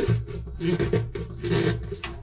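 Plastic screw-on cap of a pump housing being twisted on by hand, its threads and greased gasket rasping in about four short turns.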